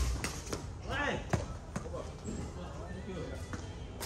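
Badminton racket strokes on a shuttlecock, sharp cracks coming quickly in the first two seconds, the loudest about a second and a half in, with a voice around the middle of the rally.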